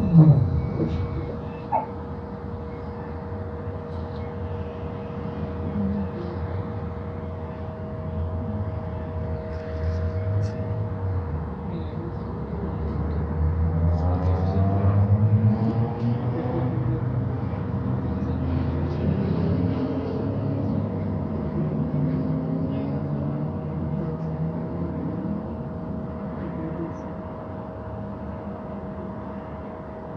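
Inside a city bus held in traffic: a steady two-tone electrical hum over a low rumble, the rumble swelling for a few seconds midway with a brief rising whine, and faint voices of passengers in the background.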